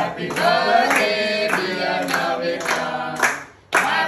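A group of people singing together while clapping along in a steady beat, with a brief break in the singing near the end.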